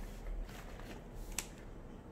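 Plastic-sleeve pages of a display folder being turned by hand: a faint rustle with a single sharp click about one and a half seconds in.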